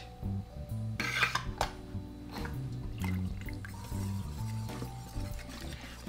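Wire whisk clinking against a stainless steel mixing bowl and splashing as it stirs a thin, watery batter, over soft background music.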